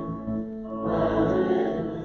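A small group of voices singing a hymn together, holding sustained notes, with a short lull under a second in before the next phrase.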